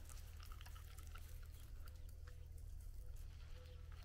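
Faint outdoor background with a steady low rumble, a few small ticks and a faint, wavering high-pitched note that comes and goes; no clear event.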